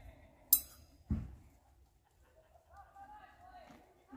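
A single sharp metallic clink about half a second in, then a dull knock, as a small aluminium camp kettle is handled. A faint voice is heard near the end.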